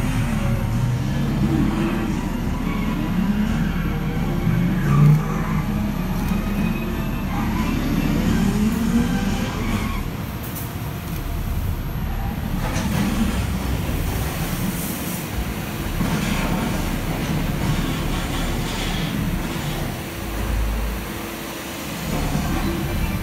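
Loud film soundtrack playing in a 4DX cinema: a continuous deep rumble, like vehicles or engines.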